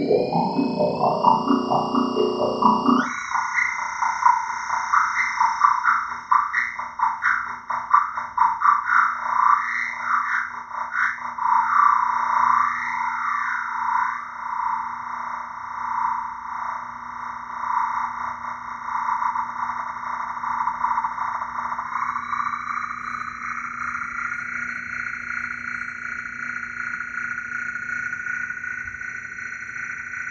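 Moog Moogerfooger analog effects pedals played as an electronic instrument. A busy tone climbs in steps, then switches abruptly about three seconds in to a sustained drone with a fast fluttering warble. The drone smooths out and brightens a little about two-thirds of the way through.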